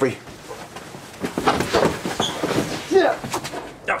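Bumps and a clatter of a fall in a puppet film's soundtrack, with short vocal grunts: the tall giraffe puppet knocking into the doorway and falling down. The knocks start about a second in and are loudest near the end.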